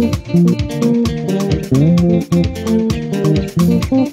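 Stratocaster-style electric guitar playing a single-note praise melody with sliding notes, over a backing track with a steady percussive beat and a bass line.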